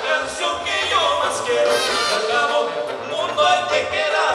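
Live Tierra Caliente dance band playing with a singer, a steady full mix with a few sliding notes.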